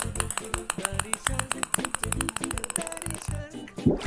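Children's background music with a rapid run of clicks, about a dozen a second: a cartoon sound effect of small balls pouring into a jar. The clicks stop about three and a half seconds in.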